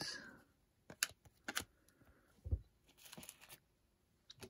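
Quiet handling of glossy Panini Optic trading cards being flipped through and set down: a few sharp clicks, a soft thump about two and a half seconds in, and a brief rustle near the end.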